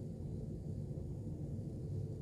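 Room tone: a steady low background hum with no distinct sounds.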